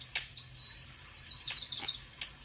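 High-pitched chirping: a short chirp, then a rapid trill of notes that falls slightly in pitch toward the end.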